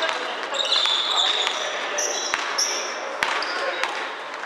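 Basketball shoes squeaking on a wooden gym floor, several short high squeaks in the first three seconds, with a few sharp thuds of a basketball bouncing and players' voices underneath.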